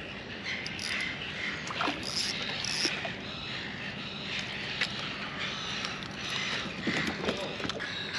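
Spinning reel being wound in, a steady mechanical whirr from its gears with a few sharp clicks, as a hooked fish is reeled up.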